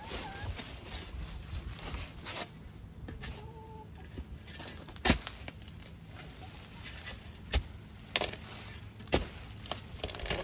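Shovel blade being driven into soil and banana roots in several sharp strikes, the loudest about halfway through. A hen clucks briefly a little after three seconds in.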